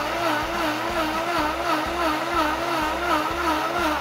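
Countertop blender motor running at high speed, blending almond milk, matcha and spices, with a steady, slightly wavering pitch.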